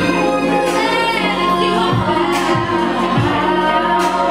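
A woman singing live into a handheld microphone, amplified, over backing music with steady bass and a recurring low beat.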